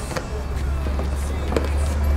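Steady low rumble with two faint clicks as the latch of a plastic ATV rear cargo box is pulled open, the first click just after the start and the second about one and a half seconds in.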